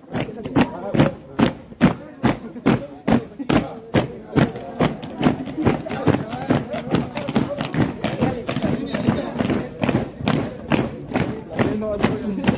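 Many feet stamping in step on a concrete street as a large group marches, a sharp beat about three times a second, with the group's voices underneath.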